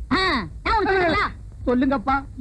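A person's voice giving two exclamations, each sliding down in pitch; the second is longer.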